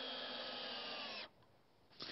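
Cordless drill running steadily under load into a wooden deck rail, its whine sagging slightly in pitch just before it stops about a second in.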